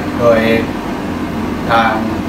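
A man speaking Thai, one word near the start and another near the end, with a pause between, over a steady low hum of room noise.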